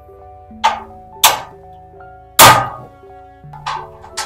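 Plastic hooks clicking and knocking into the holes of a pegboard as they are fitted: four sharp clicks, the loudest a little past halfway. Soft background music plays under them.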